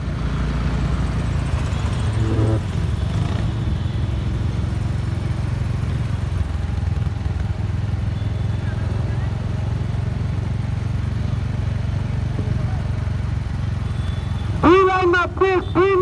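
Steady low rumble of motorcycle and vehicle engines as a rally convoy of motorbikes and a pickup passes along the road. Near the end a loud amplified voice comes back in over a loudspeaker.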